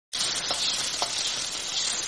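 A steady, high hiss of sizzling with a couple of faint clicks, starting just after the opening.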